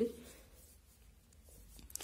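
Faint, soft scratching of hands rubbing damp cornstarch and food-colour powder against a steel plate, kneading the colour through the powder.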